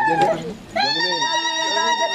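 A long, high, steady held note, broken off briefly about half a second in and picked up again with a rising start, over people talking.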